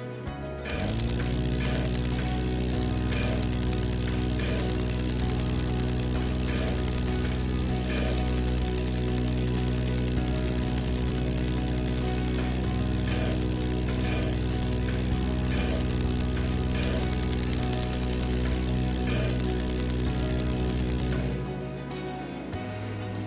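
CO2 surgical laser firing continuously on the eyelid lesion: a steady, rapid buzzing hum that rises in pitch as it starts about a second in, holds level, and cuts off just before the end.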